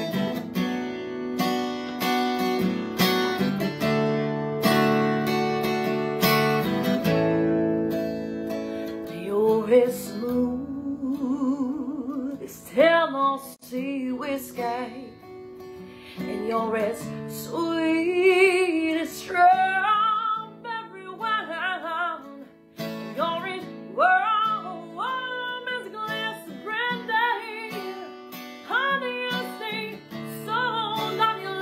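Acoustic guitar strummed alone for the first several seconds. A woman's voice then joins about nine seconds in, singing long, bending notes with vibrato over the guitar.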